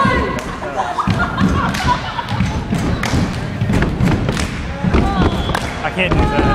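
Repeated dull thumps and knocks, many a second, over scattered voices and shouts in a large gym.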